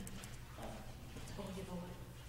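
Faint talking away from the microphone, in two short snatches, over a steady low hum.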